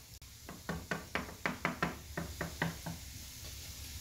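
Wooden spoon knocking rapidly against a non-stick frying pan while stirring diced onions, about six or seven taps a second. The taps stop about two-thirds of the way through.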